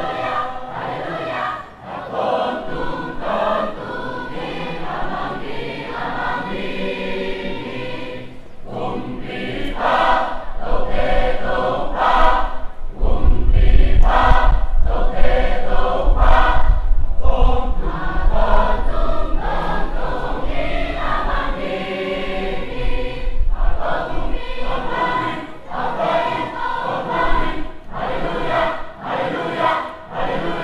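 A large mixed choir of young men and women singing together. A low rumble runs underneath for several seconds in the middle, where the sound is loudest.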